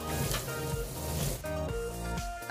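Kitchen tap water running into a glass bowl of peeled prawns as they are rinsed in a stainless-steel sink, for about a second and a half, under light background music.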